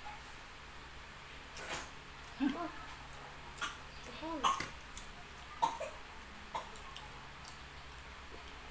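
Eating at a table: scattered short clicks and taps of chopsticks and a fork against a plate, about half a dozen, with two brief murmured voice sounds near the middle.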